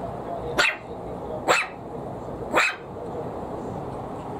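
Maltese puppy giving three short, high barks about a second apart, barking at a plastic bottle on the floor that it is afraid of.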